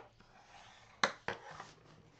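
Cardstock being folded along its score lines, a faint paper rustle, with a sharp tap about a second in and a lighter one just after.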